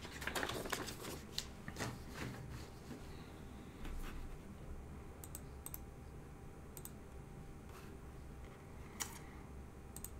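Faint typing and clicking on a computer keyboard: a quick flurry of keystrokes in the first second or so, then single clicks every second or two.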